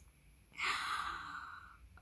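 A woman's long breathy sigh, starting about half a second in and slowly fading over more than a second.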